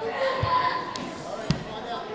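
Bare feet stamping on a wooden gym floor during a karate kata, two thuds about a second apart, the second sharper, in a large echoing hall.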